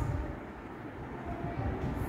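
Steady low rumble of background noise, with faint scratching of chalk as a word is written on a blackboard.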